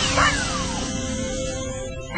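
Background music for a TV show with a falling whistle-like sound effect that sweeps down in pitch and ends within the first second, over a steady held tone.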